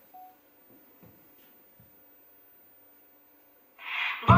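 Quiet room tone with a faint hum and a few soft knocks, broken by one short beep near the start. Loud dance-pop music cuts in just before the end.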